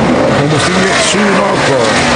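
A voice talking over the steady din of stock car engines on pit road during a NASCAR pit stop.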